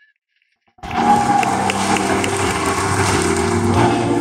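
Near silence for almost a second, then a men's chorus comes in abruptly, singing loudly in harmony.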